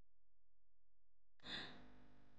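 Near silence, broken about one and a half seconds in by one short, faint intake of breath, a gasp.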